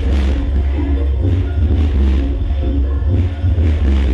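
Loud music played through a large truck-mounted sound-system speaker stack, dominated by very heavy deep bass with a melody running above it.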